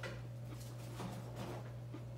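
Steady low hum, with a few light clicks and taps of things being handled on a kitchen counter.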